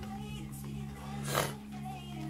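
Music from a vinyl record on DJ turntables, played through speakers: steady sustained bass notes under a wavering, voice-like line, with one brief noisy burst a little past halfway.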